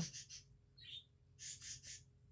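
Faint chirping of pet birds, one short high chirp about a second in, with a soft hiss in the second half.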